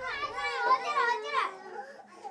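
A group of young children calling out together, many small voices overlapping, dying down after about a second and a half.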